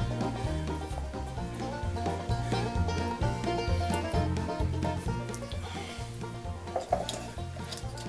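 Background music with a steady, regular bass line and a light melody over it.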